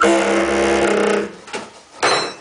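A saxophone blowing a loud, rough held note that starts suddenly, lasts about a second and then fades, followed by a shorter, fainter blast about a second and a half in.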